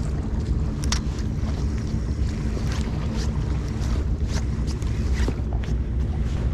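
Wind rumbling steadily on the microphone over the wash of the sea, with a few short, light clicks scattered through.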